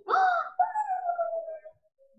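Two drawn-out wailing cries from a voice, a short one and then a longer one that slowly falls in pitch.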